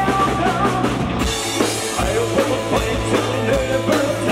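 A live power metal band playing at full volume: distorted electric guitars, bass and a drum kit. The riff and the bass pattern change about a second in.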